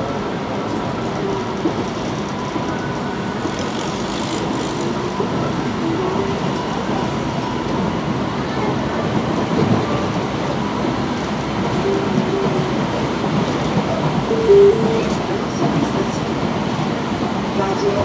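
Metro train running at speed, heard from inside the passenger car: a steady rumble of steel wheels on rail and the running noise of the car. One brief louder sound comes about fourteen and a half seconds in.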